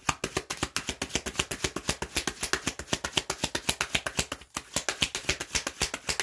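An Animal Spirit oracle card deck being shuffled by hand: a fast, even patter of card clicks, about ten a second, with a brief pause about four and a half seconds in.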